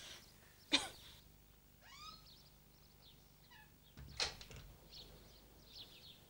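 Faint chirping calls from an animal, short rising and falling sweeps, with a sharp click about three-quarters of a second in and a louder knock about four seconds in.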